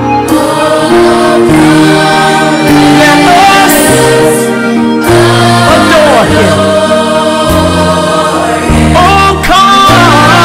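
Gospel choir music: voices singing sustained, changing notes over steady low accompaniment.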